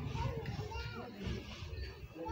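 Children's voices talking and calling in the background, over a low rumble.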